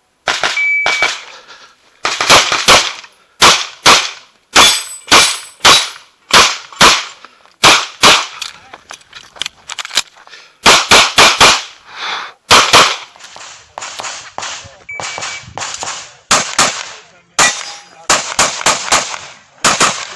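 Rapid semi-automatic pistol fire in a practical shooting stage: shots come in quick pairs and short strings, separated by brief pauses as the shooter moves between targets.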